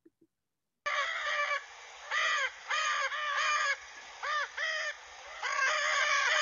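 Recorded calls of a Lear's macaw played back: a run of loud, harsh calls starting about a second in, several of them rising then falling in pitch, repeated with short gaps.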